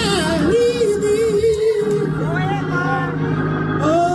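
A male gospel singer singing into a microphone: he holds a long wavering note, then moves through runs of notes, over organ accompaniment.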